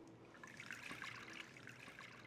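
Water being poured into beaten eggs in a glass mixing bowl: a faint, steady trickle.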